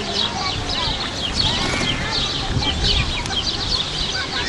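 A group of birds calling continuously, with many short, high chirps several times a second and a few lower, sliding calls, over a low background rumble.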